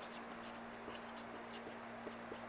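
Red marker pen writing on a paper sticky note: faint, short scratching strokes over a steady low hum.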